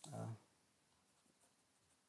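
A man's brief hesitant 'uh', then near silence: room tone with a few very faint ticks.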